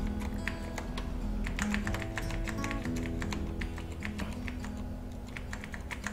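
Computer keyboard keys clicking in quick, irregular taps over quiet background music of held notes.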